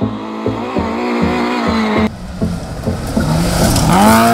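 Classic rear-wheel-drive Lada rally car's engine revving hard, its pitch dropping and climbing again through gear changes, then rising sharply near the end.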